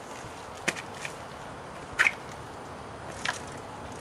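A small front-drive recumbent trike being pedalled over concrete: three short, sharp clicks, evenly spaced about 1.3 seconds apart, over a steady background hiss.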